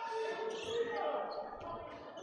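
Sounds of a handball game on a wooden court: the ball bouncing as it is played, over the voices of players and spectators in the hall.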